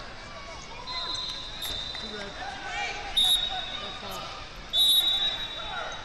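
Referee whistles sounding in a large hall, a fainter one followed by two loud blasts about three and five seconds in. Indistinct shouting from coaches and spectators runs throughout.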